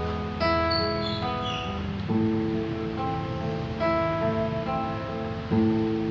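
Acoustic guitar fingerpicked with an arpeggio pattern in A minor, single plucked notes ringing over each other, the bass note changing about two seconds in and again near the end.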